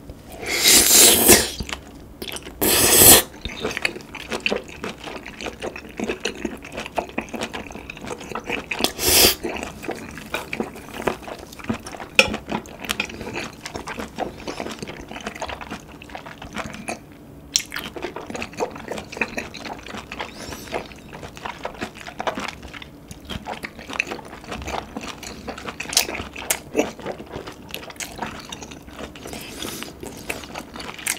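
Close-miked wet chewing of boiled webfoot octopus in chili sauce, a dense run of small smacks and squishes. It opens with loud wet slurps in the first three seconds as the tentacles are drawn into the mouth, and there is another near nine seconds.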